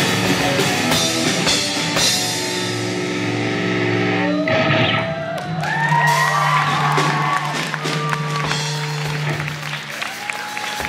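Live rock band with two electric guitars and a drum kit playing loudly. After about four and a half seconds the drumming thins out, and a held low note rings on under sliding, wavering high guitar notes as the song winds down.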